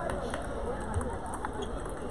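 Faint, scattered clicks of celluloid table-tennis balls striking paddles and tables across a busy hall, over a low murmur of background voices.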